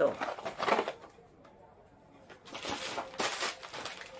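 Shop packaging being handled: cardboard boxes set down in the first second, then, after a short quiet gap, plastic snack bags rustling as they are picked up.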